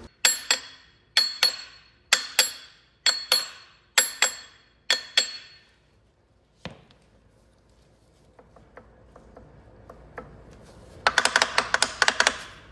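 Hammer blows on steel, struck in pairs about once a second six times, each ringing. One duller knock follows, then a quick metallic clatter near the end as the gear on the Cat C-10 diesel's front gear train comes loose.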